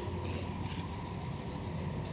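Steady low background rumble with a faint even hiss and no distinct events.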